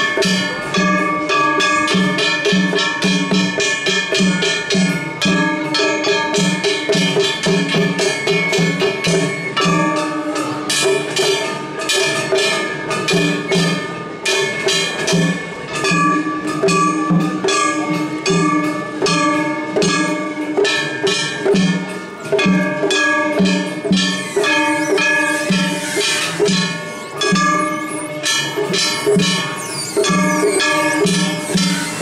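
Kumagaya festival hayashi played on a float: hand-held kane gongs clanging in a fast, steady rhythm with ringing metallic tones, over repeated taiko drum beats.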